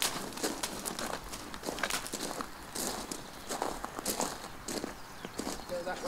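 Footsteps crunching on gravel: a person's boots and a foal's hooves walking together at an uneven pace.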